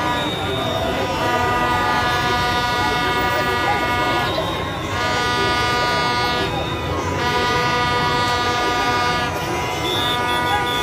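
Horns blown in long held blasts over the din of a large cheering crowd: one long blast, a short break about four and a half seconds in, another, a brief dip near the seven-second mark, then a third held to near the end.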